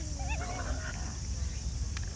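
Raccoon dog cubs whining: a few short, wavering, high-pitched calls in the first second, then a single sharp click near the end.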